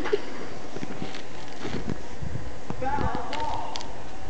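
A cat clawing and pouncing at a fabric couch: soft, irregular thumps and scratches. A person's voice is heard briefly about three seconds in.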